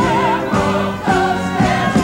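Gospel-style Broadway show tune: a voice singing with heavy vibrato over a choir and band, with a beat about twice a second that the congregation claps along to.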